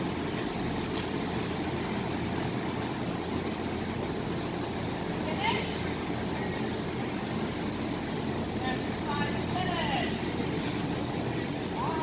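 Steady rushing background noise of a large indoor arena, with a few short distant voices about five seconds in, again around nine to ten seconds, and at the very end.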